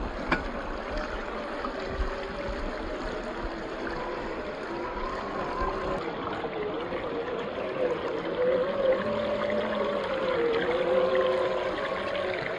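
Stream water rushing and splashing around a 1/10-scale RC crawler as its 540 35T electric motor and drivetrain whine, the pitch wavering as the truck pushes through the water. The whine grows louder for a few seconds near the end.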